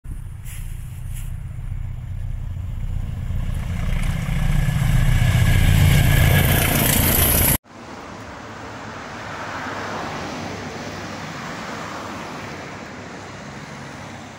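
A train approaching along the line, its rumble and rail noise growing steadily louder, cut off abruptly after about seven and a half seconds. Then steady road traffic on a town street, fading out near the end.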